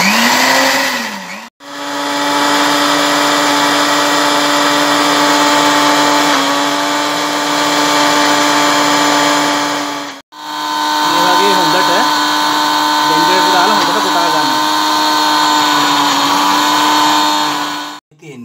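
Electric blender grinding the ingredients for mint sambol: mint leaves, coconut, onion, garlic and chillies. The motor runs in three spells with a steady hum, stopping briefly about a second and a half in and again about ten seconds in, and its pitch dips slightly now and then as the load shifts.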